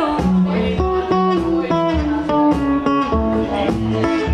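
Acoustic guitar playing a reggae accompaniment over a steady low stompbox beat, about two beats a second.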